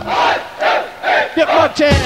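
Breakdown in an early-1990s old school hardcore rave mix: the bass drum drops out and a shouted vocal repeats in short bursts, about two a second, until the beat comes back in near the end.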